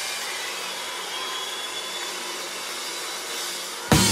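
A steady, hiss-like rushing noise with no beat or tune, in the gap between two songs. A sharp hit just before the end starts the next track.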